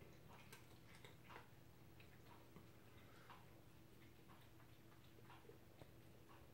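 Near silence with faint, irregular small clicks, a few a second: a cat crunching a dry treat.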